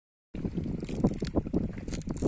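Gentle river waves lapping and splashing at a stony bank, with wind buffeting the microphone, starting a moment in.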